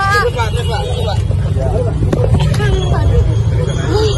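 Several people talking over one another at close range, over a steady low rumble, with a few short knocks as the phone is handled against the car.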